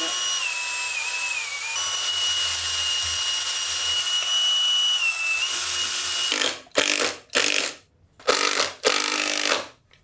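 Cordless drill-driver running in one long whine whose pitch wavers slightly, then several short trigger bursts as screws are driven into the display's wooden mounting frame.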